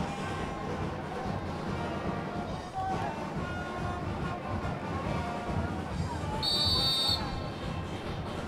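Low field-side crowd ambience with faint music under it, and one short, shrill whistle blast about six and a half seconds in.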